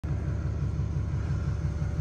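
Pickup truck engine idling, a steady low rumble with an even pulse.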